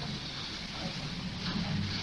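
Steady hiss and low hum of an old tape recording of a lecture, with a faint, indistinct voice in the last half second.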